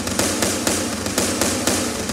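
A rapid, loud crackle of bangs, a gunfire-style sound effect played through the sound system over a steady low rumble, cutting in suddenly.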